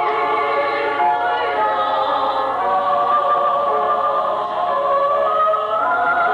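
Mixed choir of men's and women's voices singing together in harmony, holding long notes, with the melody climbing higher near the end.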